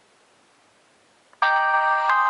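Near silence, then about one and a half seconds in a mobile phone's power-off jingle starts suddenly: a held chime of several steady tones, played through the phone's speaker.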